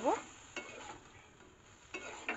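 Flat spatula stirring soya chunks in gravy in a steel kadai, with a few light scrapes against the pan over a soft sizzle.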